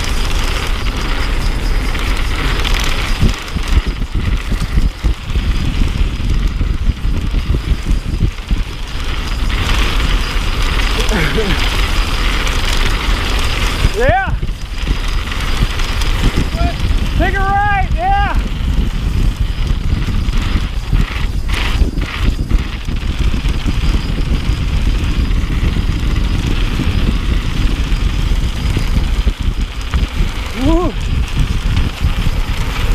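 Wind rushing over the camera microphone of a mountain bike moving fast, with tyres rolling on sandstone slab and the bike rattling. A rider gives short whooping calls about 14 seconds in and again about 17 to 18 seconds in.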